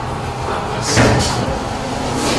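A single dull thump with a short rustle, about a second in.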